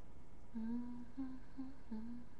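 A woman humming a tune to herself, starting about half a second in with one longer low note followed by three shorter ones.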